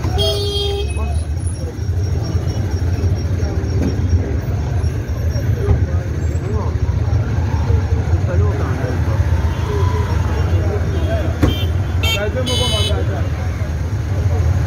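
Dense street traffic heard from a motorcycle creeping through a jam, with a steady low engine and road rumble. A short horn toot sounds near the start and another about twelve seconds in, with people's voices around.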